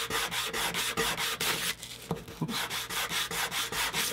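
The glued edge of a leather lighter case being sanded on a sheet of sandpaper laid flat on a wooden bench, rubbed back and forth in quick, even strokes, about five a second, with a short break about halfway. This levels the edges of the glued seam.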